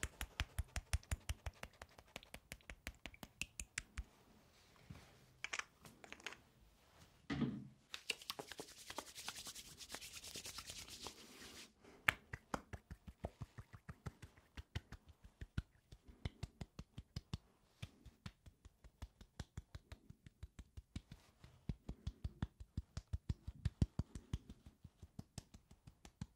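Hands rubbing aftershave between the palms and patting it on in a quick, even run of light taps, several a second. A few seconds in there is a stretch of steady hissing rubbing, with one heavier thump just before it.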